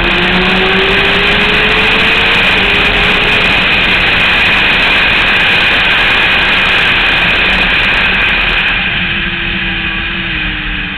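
Yamaha YZF-R6 inline-four engine running hard at high revs, heard from an onboard camera under heavy wind noise. The engine note climbs over the first few seconds, and the whole sound eases a little near the end.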